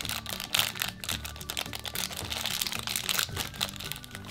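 Thin plastic blind-bag pouch crinkling and crackling in the hands as it is pulled open, with soft background music underneath.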